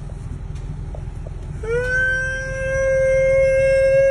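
A dog howling: one long, steady howl that rises in about two seconds in and is held at one pitch, over the low rumble of the car it is riding in.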